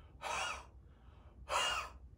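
A man breathing out hard through his mouth twice, about a second apart. It is an audible 'breathed out' demonstration.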